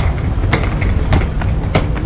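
Steady low rumble of wind on the microphone while walking, with light taps about every half second from footsteps going down stone steps.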